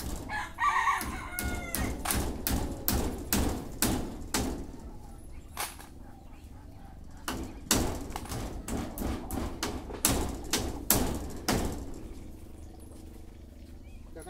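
Two runs of sharp hammer-like strikes, about three a second, each lasting a few seconds with a pause between. A chicken calls briefly near the start.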